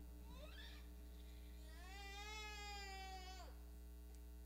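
A young child's faint, drawn-out cry, rising and then falling in pitch, lasting about two seconds in the middle, over a steady low hum.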